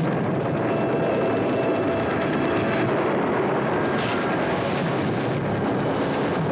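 Steady, dense rushing noise of a fire sound effect, the rumble of burning flames, with a faint held tone in the first half.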